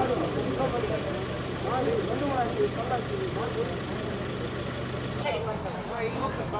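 Indistinct voices talking over a steady low engine hum, like an idling vehicle; the hum cuts out about five seconds in.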